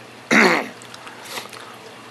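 A man clears his throat once, a short harsh burst, over the steady rush of water and skimmer bubbles running through a reef aquarium sump.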